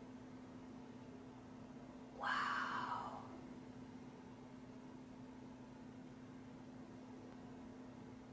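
Quiet room tone with a faint, steady low hum, broken once about two seconds in by a woman's soft, drawn-out "wow".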